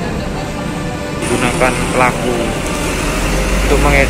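Background music for about the first second, then an abrupt change to outdoor street ambience: a steady hiss with people talking. A low rumble joins about three seconds in.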